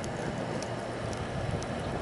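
Steady rush of air with a low hum, from the forge's blower driving air through the hose into the burning coal fire, with a few faint crackles.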